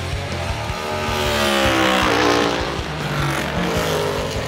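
NASCAR Next Gen race car's V8 passing at speed: the engine note rises as it approaches, then drops sharply in pitch about halfway through as it goes by, over background music.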